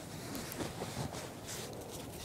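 Faint handling noise from hands working close to the microphone, with a few light rustles and no clear single event.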